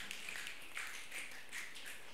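Faint, irregular patter of audience finger snaps and light claps in appreciation of a spoken-word line.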